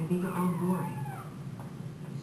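Brussels Griffon puppy whining, a high cry that falls in pitch during the first second.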